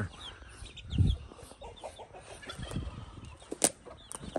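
Young chickens peeping and clucking in short, scattered chirps. A loud low thump about a second in and a sharp click near the end.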